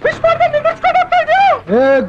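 A very high-pitched voice in quick, short syllables that bend up and down, ending in a long downward slide near the end.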